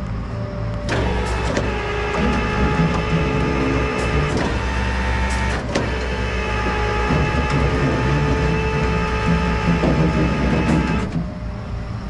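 Rollback tow truck's winch running with a steady whine over the truck's engine, pulling a crashed SUV up the tilted bed, with a few clunks from the vehicle and bed. The winch stops shortly before the end.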